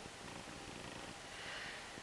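Faint scratching and rustling of a pencil and hands on a sheet of paper, a little louder near the end.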